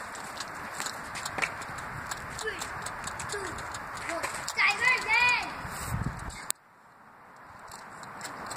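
Tree branches and leaves rustling and clicking against a handheld phone as it moves through the foliage, with a brief high-pitched voice repeated a few times, like a giggle, about five seconds in. A low thud follows, then the sound drops away suddenly and the rustle slowly comes back.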